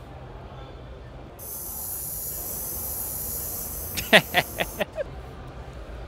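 A steady high-pitched hiss that starts abruptly about a second and a half in and cuts off sharply some three seconds later.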